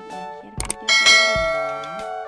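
Background music with a steady beat; about a second in, a bright bell chime rings out and slowly fades: a notification-bell sound effect.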